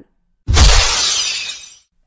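A café's plate-glass shop window smashing: a sudden heavy crash about half a second in, then breaking glass that fades away over about a second.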